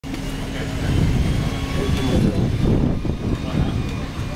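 Steady hum of a road bike spinning on a stationary turbo trainer as the rider pedals a warm-up, a level drone with a low rumble under it.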